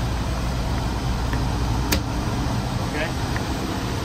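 Steady low hum of the Trane Intellipak running, then a single sharp click about two seconds in as a compressor contactor drops out when the relay is switched off from the controller; the low hum turns less steady after the click.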